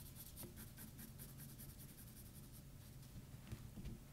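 Graphite pencil shading lightly on drawing paper: faint, rapid back-and-forth scratching strokes that stop after about two and a half seconds, followed by a couple of soft knocks near the end.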